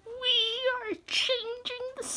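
High-pitched, meow-like vocal calls: one long call of about a second, then two shorter ones at the same pitch.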